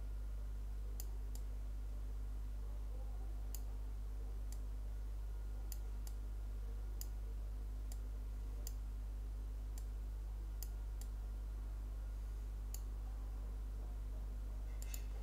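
Computer mouse clicking about a dozen times at irregular intervals, over a steady low electrical hum.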